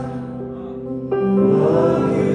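Gospel worship song: held keyboard chords with group singing, which comes in louder with a new chord about a second in.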